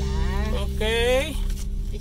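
Steady drone of a car driving, heard from inside the cabin, with a brief voice about a second in.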